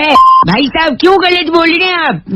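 A short, steady electronic beep lasting about a third of a second near the start, then a man talking.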